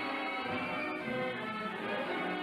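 Orchestral music led by strings, playing held, sustained chords.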